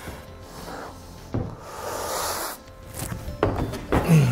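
Background music, with the dull knocks and scuffs of a climber's shoes and body against a plywood bouldering wall and its volumes as he swings into a jump move. There are two sharp knocks, about a second and a half in and again near the end.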